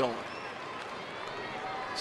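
Steady background ambience of a ballpark crowd, an even murmur with no distinct events.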